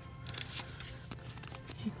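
Faint clicks and rustles of hands handling a clear plastic 3D crystal puzzle and a sticker sheet while a sticker is pressed into place.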